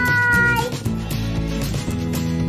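Background music with a single cat's meow over it in the first half-second: a call that rises at the start, then holds and falls slightly.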